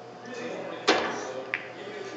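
A pool cue strikes a ball with a sharp click about a second in, followed half a second later by a second, lighter click as the ball hits another ball or the cushion, over a low murmur of voices in the hall.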